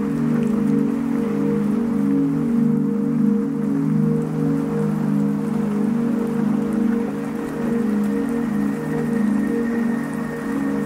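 Ambient electronic music: sustained low synth chords held steadily, layered over a continuous rain sound.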